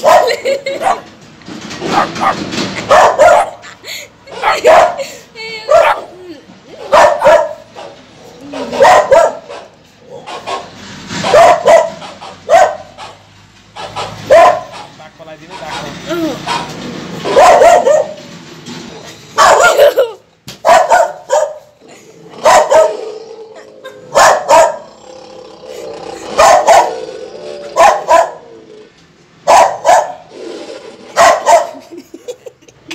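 A dog barking again and again, single barks or short runs of two or three, repeating every second or two.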